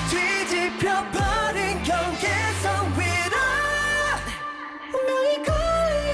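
K-pop song with male vocals singing over a heavy electronic beat, with deep bass notes that slide downward. The bass drops out briefly about four and a half seconds in before the full beat comes back.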